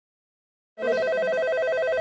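A telephone ringing, an electronic trill that rapidly alternates between two pitches. It starts about three-quarters of a second in and keeps on steadily: an incoming call waiting to be answered.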